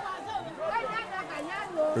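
Faint background chatter of several voices, well below the level of the nearby narration.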